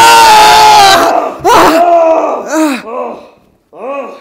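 Two men yelling loudly together for about a second, then a shorter yell and a few groans of pain that rise and fall in pitch. This comes as a mass of tight rubber bands is being pulled off one man's arm.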